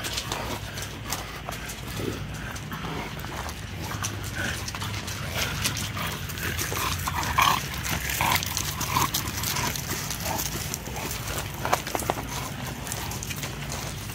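Dogs moving about on gravel, with scattered clicks and scuffles of paws and a handful of short dog yips bunched about halfway through.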